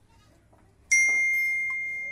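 A single metallic ding, struck once about a second in: a clear high ring that fades slowly.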